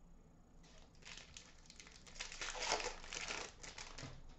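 Wrapper of a 2017-18 Upper Deck Artifacts hockey card pack crinkling and tearing as it is ripped open by hand. It starts about half a second in and is loudest near three seconds.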